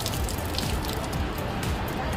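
A thin stream of water splashing steadily into a puddle on a concrete floor.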